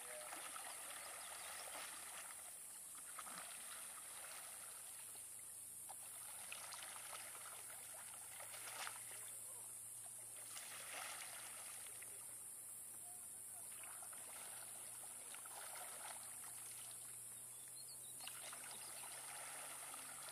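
Faint kayak paddle strokes in calm water: blades dipping, splashing and dripping as the kayak is pivoted around, a stroke every two seconds or so. A steady high hiss runs underneath.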